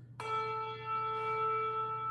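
A single bell-like note struck about a fifth of a second in and left to ring on, fading slowly, sounding the pitch for the chanted psalm that follows.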